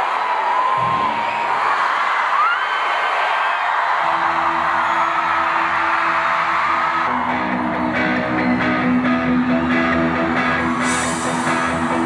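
A large concert crowd cheering and whistling. About four seconds in, a sustained chord starts, and about three seconds later a guitar begins picking notes over it while the crowd keeps cheering.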